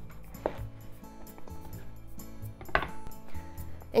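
Soft background music, with a kitchen knife cutting through the base of a shimeji mushroom cluster and knocking once on a wooden cutting board about half a second in. A brief handling noise near three seconds comes as the mushroom cluster is taken in the hands to be broken apart.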